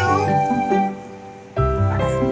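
Soft instrumental background music with steady held notes. It dips quieter about a second in and comes back in full about half a second later.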